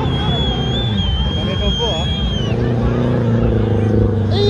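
Suzuki 4x4's engine running steadily as it wades through a river, under crowd chatter and shouts. A long, slightly wavering high whistle is heard for about two seconds, falling off at its end.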